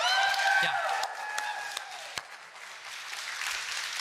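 A church congregation clapping, opened by a high, drawn-out cheer lasting over a second.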